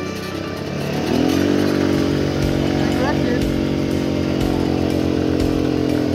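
A small quad bike's engine revving up about a second in and then held at high, steady revs under load.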